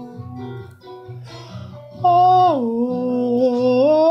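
Music: plucked guitar notes under a person singing or humming long held notes. About two seconds in, a loud sustained note comes in, slides down in pitch, and rises again near the end.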